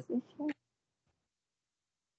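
The end of a spoken "thank you" and a short laugh in the first half second, heard through a video call, then dead silence.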